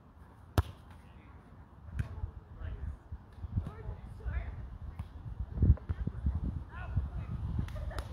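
A volleyball struck hard by hand: one sharp smack about half a second in, then a softer hit about a second and a half later.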